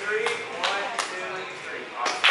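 Quiet voices and laughter in a room, with three sharp clicks or taps in the first second.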